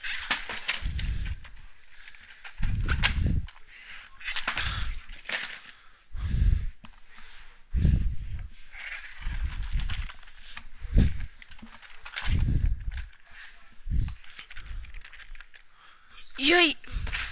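A run of dull thumps, about one every second or two, mixed with sharp clicks and knocks.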